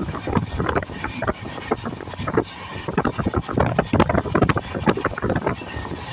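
Running noise of a moving train heard at an open coach window: an irregular rattling clatter over a rumble, with wind buffeting the microphone.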